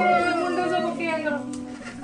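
A person's voice in a long, drawn-out call that falls slightly in pitch, fading near the end.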